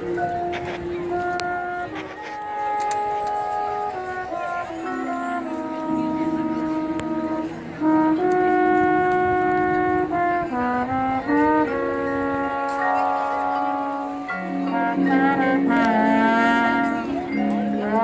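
High school marching band's brass section, trombones among it, playing slow, sustained chords that swell louder about eight seconds in, with wavering held notes near the end.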